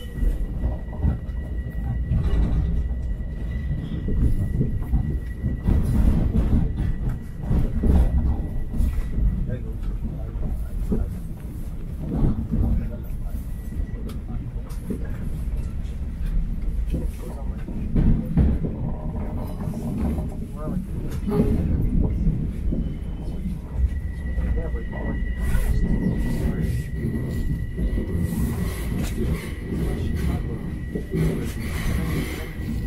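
Long Island Rail Road electric commuter train running through a tunnel: a steady low rumble of wheels on rails with a thin, steady whine that fades about a third of the way in and comes back near the end, as the train pulls into an underground station.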